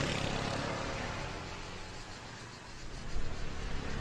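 Motor scooter engine running and fading as it rides away. About three seconds in, it grows louder again with an uneven rise and fall.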